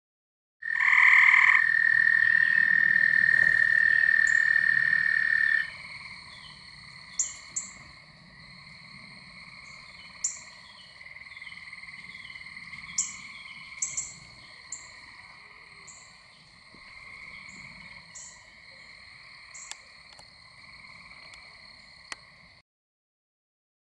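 A loud, steady frog trill for about the first five seconds, which cuts off abruptly. Then a fainter chorus of trilling frogs and toads carries on, while a northern cardinal gives about a dozen sharp, scattered chip notes, alarm calls after being flushed from its night roost.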